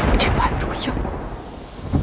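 Thunder rumbling and slowly fading over a steady hiss of rain.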